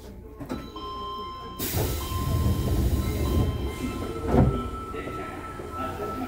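Sendai Subway Namboku Line car doors closing: a sudden rush of air about one and a half seconds in, then a thump as the doors shut a little past four seconds, over the hum of the stopped train car.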